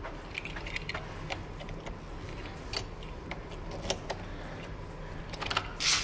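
A door key handled in its plastic sleeve, with small clicks and rustles, then the key going into a door-knob lock near the end with a louder scrape.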